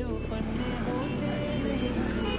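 Background music over road traffic, with motor scooters and motorcycles running along the street.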